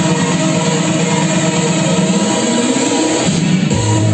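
Loud, continuous music playing for a dance routine, with a deeper bass part coming in near the end.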